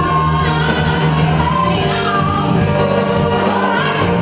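A live band plays while a female lead singer sings, with backing vocalists joining in, in a full, gospel-tinged soul-pop sound.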